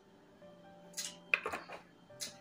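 A few short clinks and knocks about a second in, from a plastic cooking-oil bottle and an aluminium pressure cooker as the pour of oil ends, over faint background music with held notes.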